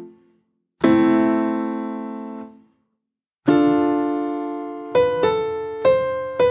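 Piano played in separate strikes, each ringing and dying away: one about a second in, another about three and a half seconds in, then three quick higher notes on top of it near the end.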